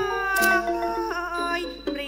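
Thai classical ensemble music accompanying dance drama: a nasal melodic line that bends and glides in pitch, over a sharp percussion stroke about half a second in.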